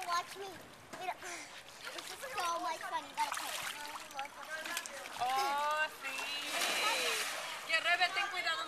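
Pool water splashing, loudest as a longer burst of splash noise about six to seven and a half seconds in, amid people's voices.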